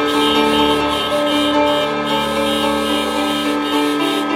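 Many car horns sounding together and held, their different pitches blending into one long chord-like blare.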